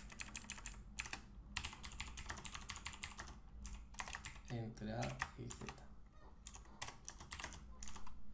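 Typing on a computer keyboard: runs of quick keystrokes with short pauses between them.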